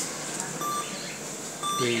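Dutch-Bangla Bank ATM giving two short, high electronic beeps about a second apart, the reminder that sounds while the card is being returned for the user to take.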